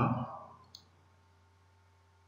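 A single computer mouse click, then near silence with a faint steady low hum.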